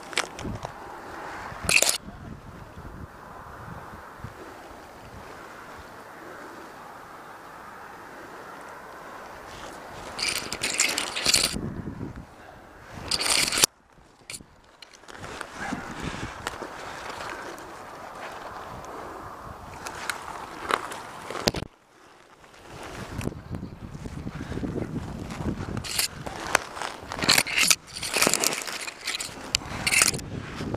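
Scraping and rustling of a climber's body and gear against tree bark and conifer branches, coming in irregular bursts of louder scrapes several seconds apart with a quieter steady hiss between them.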